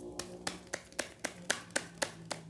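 A deck of tarot cards being shuffled by hand: a quick, even run of sharp card snaps, about four a second.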